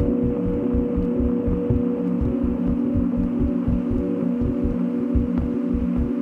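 Glitch-dub ambient electronic music: a sustained low drone chord with a fast, irregular stream of deep bass pulses, several a second, churning beneath it.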